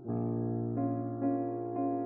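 Steinway concert grand piano playing a slow passage. A chord is struck at the start, then new notes come about every half second over a sustained low note.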